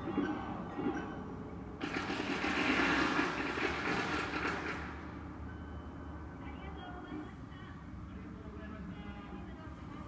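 A loud hissing rush starts about two seconds in and lasts about three seconds, over voices and music from a street procession.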